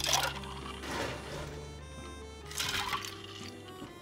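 Ice cubes tipped from a scoop into a tall cup of tea, clattering in three short bursts with the first the loudest, over background music.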